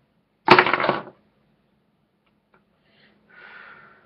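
A man coughs once, loudly and sharply, while smoking a cigarette. About three seconds later comes a fainter breathy exhale.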